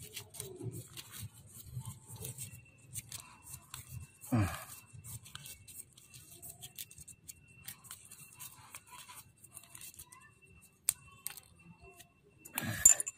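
PTFE thread-seal tape being pulled off its roll and wound around the metal male threads of a plastic pipe fitting: a run of small crackling ticks and stretching sounds. A brief louder sound about four seconds in.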